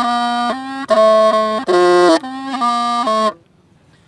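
Hmong bamboo pipe (raj) playing a slow, sad tune of held notes that step up and down with a reedy, buzzy tone. The phrase breaks off a little after three seconds in for a breath.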